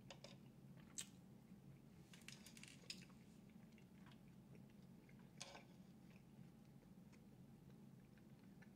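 Faint mouth sounds of someone chewing and biting a soft chicken taco: a few short moist clicks, one about a second in, a cluster between two and three seconds, and another about five and a half seconds in, over a steady low hum.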